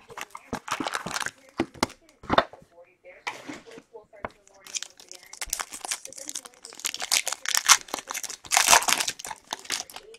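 Clear plastic wrapper around a pack of trading cards crinkled and torn open by hand, in irregular bursts of crackling and sharp rustles that come thickest in the second half.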